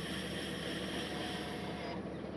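Steady drone and hiss from a boom sprayer at work, with a section of nozzles spraying. The high hiss thins near the end as that section is switched off.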